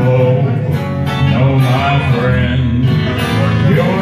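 Live country band's instrumental break with no singing: guitars playing over a steady bass line.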